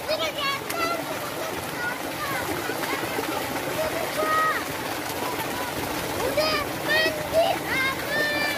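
Children's high-pitched shouts and calls while they splash and play in shallow water, over a steady wash of water noise. The calls come near the start, once around four seconds, and several times toward the end.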